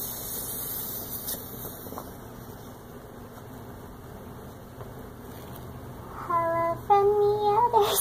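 A brief hiss near the start, then a helium-raised voice singing or humming two held notes near the end, the second higher and longer, breaking into a wobble.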